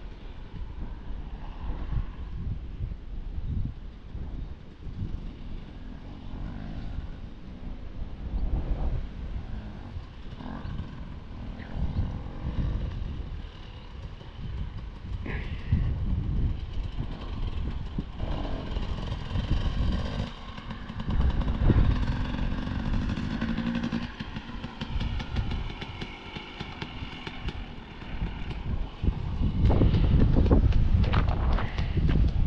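Motocross dirt bikes running on a sand track, their engine note rising and falling as they ride, loudest in the second half. Gusts of wind buffet the microphone.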